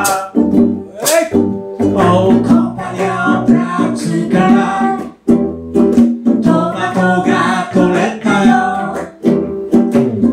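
Live acoustic band music: strummed ukulele and acoustic guitar with singing voices and sharp percussion strokes.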